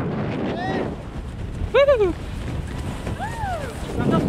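Wind buffeting the microphone, with a person's short calls that rise and fall in pitch three times, the loudest about two seconds in.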